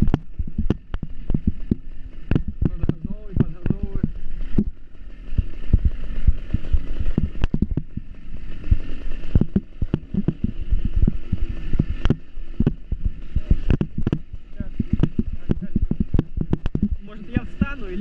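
A small motorbike riding over a rough dirt track: a constant stream of knocks and rattles from the bumps over a low rumble of wind on the microphone and the engine, with a muffled voice-like sound about three to four seconds in.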